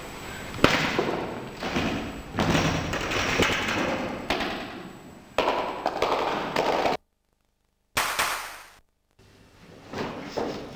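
One sharp crack of a strike breaking a held board about half a second in, then a crowd applauding, in stretches that break off abruptly.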